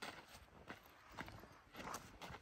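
Faint footsteps on sand, a few soft, evenly spaced steps.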